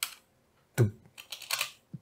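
Computer keyboard typing: a single keystroke at the start, then a quick run of several keystrokes in the second half.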